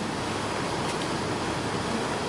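Steady, even hiss of background room and recording noise, with no other sound standing out.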